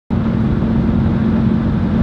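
Steady low rumble of a car driving, heard from inside the cabin, with an even drone near the bottom of the range.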